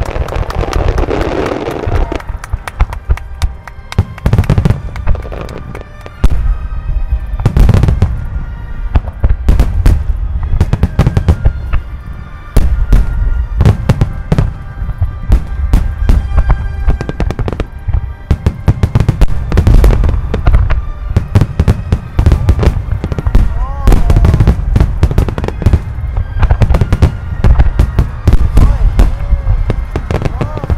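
Large aerial fireworks display: a near-continuous barrage of shell bursts, with deep booms and sharp cracks coming many times a second, and music playing underneath.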